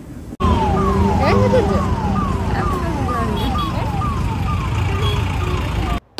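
Busy street traffic noise, with a repeating electronic tone over it that falls in pitch about twice a second. The sound starts abruptly about half a second in.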